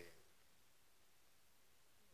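Near silence: faint room tone, as a man's voice trails off right at the start.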